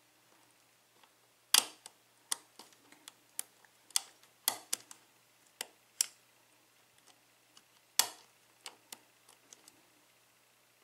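Irregular small metallic clicks and ticks from a lock pick working the pin stacks of an EVVA euro cylinder lock under tension, with the sharpest clicks about one and a half seconds in and again about eight seconds in. The picker is setting pins one by one, and the lock loses its false set.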